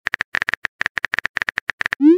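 Phone keyboard key-tap clicks from a texting app as a message is typed: a rapid, uneven run of short sharp clicks, about ten a second.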